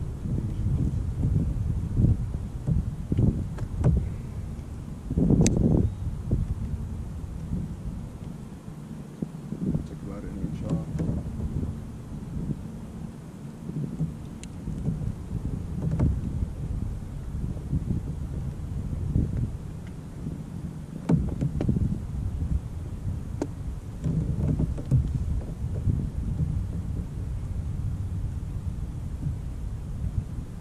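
Wind buffeting the camera microphone, a low rumble that rises and falls in gusts, with a few sharp light knocks, the strongest about five seconds in.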